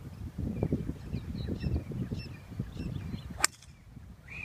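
A single sharp crack about three and a half seconds in: a golf club striking the ball off the tee. Before it there is a low, uneven rumble.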